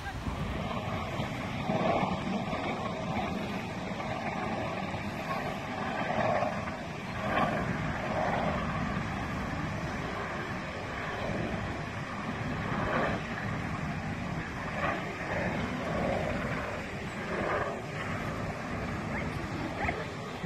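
Wind buffeting the microphone: a steady, rumbling noise that swells and drops.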